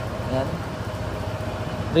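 Honda ADV 160 scooter's single-cylinder engine idling steadily.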